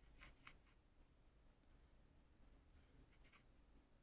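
Near silence, broken by faint, short scratches of a small brush working oil paint on a wooden palette: two close together just after the start and two more about three seconds in.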